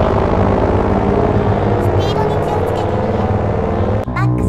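The long fading tail of an explosion over a low, steady rumble, with music underneath.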